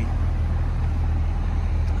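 Steady low rumble of a vehicle engine running.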